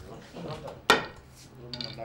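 A single sharp clink of a hard object against the wooden divination tray about a second in, with low voices murmuring around it.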